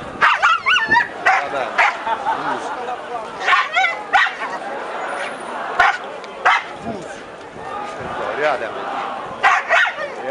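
A dog barking, about ten short, sharp barks and yelps in irregular bursts with a lull near the end, over the murmur of a crowd.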